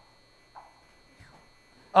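Quiet room tone: a steady faint electrical hum with a thin high whine, broken by two soft, brief voice sounds about half a second and a second in. A man's voice starts right at the end.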